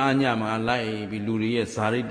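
A Buddhist monk's voice chanting in a drawn-out, sing-song intonation on a nearly steady pitch, breaking off briefly near the end and starting again.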